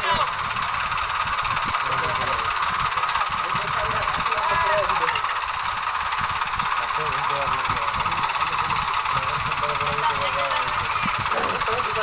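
Diesel tractor engines running steadily as one tractor tows another stuck in paddy mud, with men's voices calling out over them.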